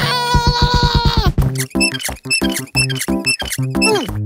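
Cartoon soundtrack: a held, squeaky whining tone for about the first second, then bouncy background music with short plucked notes and quick downward pitch slides.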